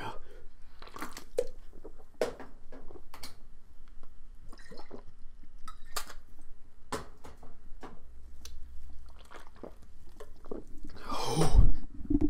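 A person gulping down a pull of liquor, with small wet clicks and swallowing noises, then a loud harsh breath near the end as it goes down badly.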